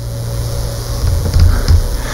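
Low rumbling, wind-like noise on a microphone, building about a second in, over a faint steady hum.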